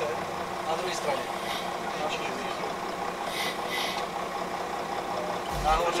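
Vehicle engine running steadily, heard from inside the cab, with faint voices in the background.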